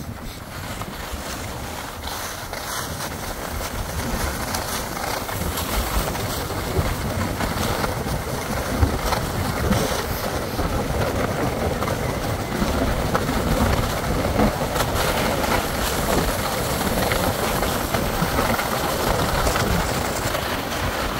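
Skis hissing and scraping over packed snow with wind rushing on the microphone, a steady noise that builds over the first few seconds as the skiers pick up speed.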